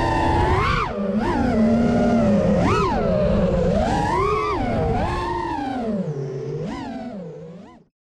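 Brushless motors of a 6S FPV freestyle quadcopter (T-Motor F60 1950kv motors spinning five-inch tri-blade props) whining, their pitch swooping up and down sharply every second or so as the throttle is punched and eased. The sound fades away near the end and cuts off.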